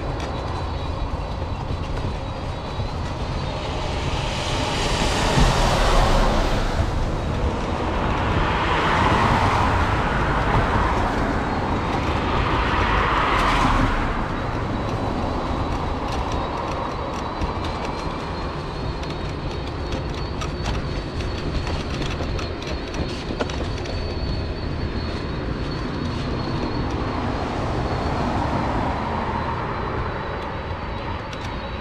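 Steady rumble of a mobility scooter running along a snow-covered footpath, with road traffic passing close by: three vehicles swell up and fade one after another in the first half, and another passes near the end.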